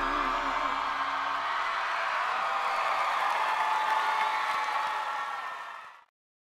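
A singer's held final note with vibrato and the band's closing chord end in the first second or so, then a studio audience cheers and applauds, fading out near the end.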